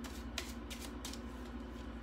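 Playing cards being handled, with one light card snap about half a second in and fainter card sounds after, over a steady low hum.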